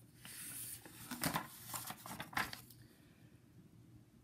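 A picture book's page being turned by hand: a brief swish of paper, then a few crisp rustles and taps over the next second and a half.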